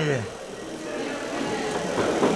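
A commentator's voice trailing off at the start, then a low hum of room noise with faint background voices in a hall.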